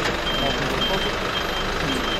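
Steady vehicle engine noise with a faint, high reversing-alarm beep repeating about twice a second, and voices low in the background.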